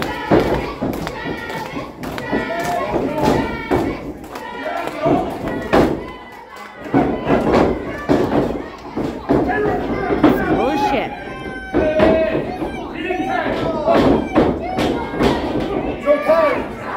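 Repeated thuds and bangs from wrestlers' bodies and feet hitting the wrestling ring's canvas, with voices shouting and talking throughout.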